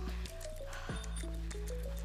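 Background music: sustained low notes under a simple melody that steps between held tones, with a soft beat about every second and a quarter.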